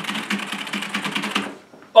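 Fast typing on a computer keyboard: a rapid, even run of key clicks that stops about a second and a half in.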